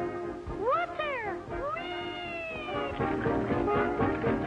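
Two gliding cartoon cries: a quick rise and fall about half a second in, then a longer one that slowly sinks, as the sardine tin is opened. A brassy dance-band score thins out under them and comes back near the end.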